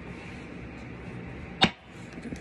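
Steady room tone with a single sharp click about one and a half seconds in.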